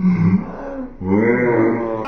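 Muffled, garbled voice of a person with a mouth stuffed full of marshmallows: two grunting utterances, a short one at the start and a longer one with a rising and falling pitch from about a second in, the strained attempt to say "chubby bunny" through the marshmallows.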